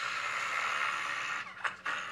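A deck of playing cards being shuffled by hand: a steady riffling rush that stops about a second and a half in, followed by a few light clicks of the cards.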